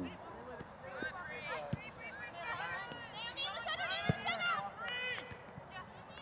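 Players' shouts and calls across a soccer pitch: several short, high-pitched voices overlapping, none close to the microphone, with two short dull thuds, one a couple of seconds in and one in the middle.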